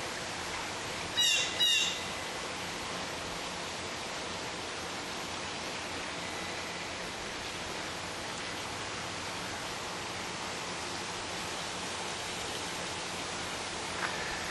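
Two short, loud bird calls about half a second apart, a little over a second in, over a steady outdoor hiss.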